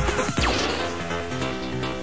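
Early-1990s hardcore rave track playing in a DJ mix. About half a second in, a falling sweep leads into a breakdown: the kick drum drops out and held synth chords carry on.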